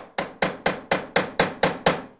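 Hammer tapping rapidly and evenly, about four sharp strikes a second, each with a short ring, working at a stripped screw to make its hole deeper.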